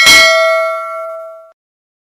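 Notification-bell ding sound effect of a subscribe-button animation, marking the bell being clicked. It is a single bright bell strike that rings and fades away over about a second and a half.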